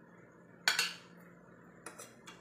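Metal spoon and fork clinking against a plate: one loud, sharp clink a little past half a second in, then a lighter tap near the end.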